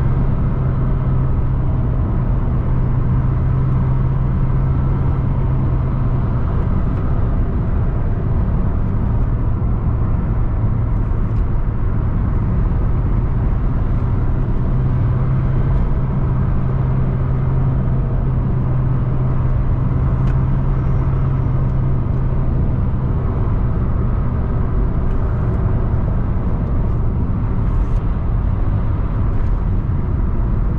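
A car's engine and tyre road noise heard from inside the cabin while driving: a steady low engine drone that wavers slightly in pitch, over continuous road rumble.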